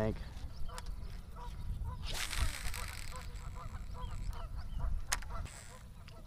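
A baitcasting reel's spool whirs briefly as a cast goes out, about two seconds in, over a low wind rumble on the microphone. Faint, rapid, repeated bird calls run through most of it, with a few light clicks from the reel.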